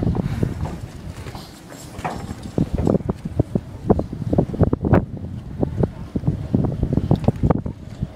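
Wind buffeting a handheld camcorder's microphone: a loud, uneven rumble with irregular thumps and gusts.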